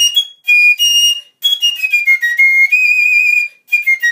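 Solo fife playing a high, shrill melody in quick phrases, broken by short gaps for breath, with a longer held note late on.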